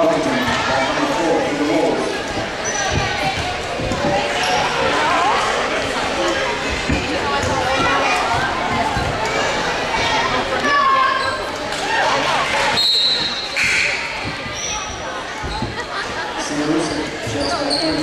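Basketball bouncing on a hardwood gym floor, with spectators' voices throughout, echoing in a large hall.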